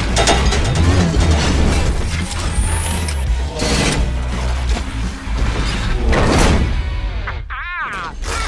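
Film sound effects of a giant mechanical robot suit moving: dense clanking, ratcheting and whirring of gears and mechanisms over a deep rumble, with two whooshing surges, about three and a half and six seconds in.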